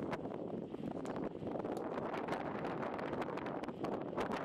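Wind rushing over the microphone of a camera riding on a moving bicycle, a steady rough noise scattered with small irregular ticks and rattles from the ride over the road.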